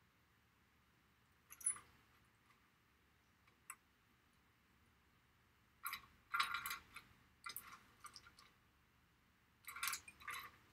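Small hard objects clicking and clinking as they are rummaged through by hand: a couple of single light clicks early, then a busier run of clicks and clinks from about six to eight and a half seconds, and another cluster near the end.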